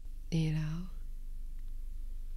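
A short spoken phrase in Thai, "ดีแล้ว" ("that's good"), about half a second in, over a steady low hum that carries on after it.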